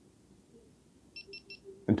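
GoPro Hero4 action camera beeping three times in quick succession as it powers on after its power button is held down: three short, high electronic beeps a little over a second in.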